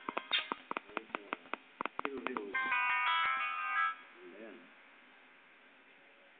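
An electronic tune of short, beeping notes mixed with a rapid run of sharp clicks, cutting off about four seconds in and leaving a quiet stretch.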